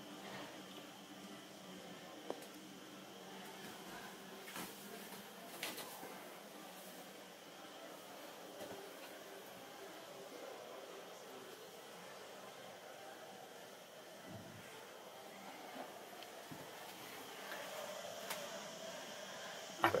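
Quiet background hall noise with faint distant voices, broken by a few soft clicks and knocks, the sharpest about two seconds in.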